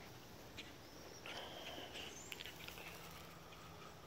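Faint outdoor garden ambience with a few soft clicks and a short, high chirping call about a second and a half in.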